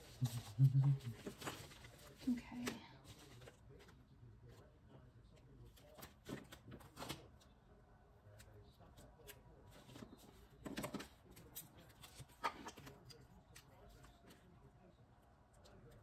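Paper pages and sticker sheets being handled on a wooden desk: scattered light rustles, taps and clicks.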